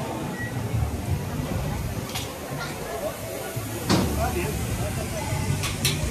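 Fairground crowd ambience: indistinct voices of people around the game stalls over a steady low rumble, with a few sharp knocks about two, four and six seconds in.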